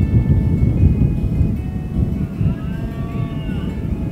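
Soft background music with long held notes over a loud low rumble of outdoor ambience; about two and a half seconds in, a cow lows once with a rising and falling pitch.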